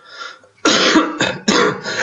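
A man coughing and clearing his throat in a run of loud bursts that start about half a second in.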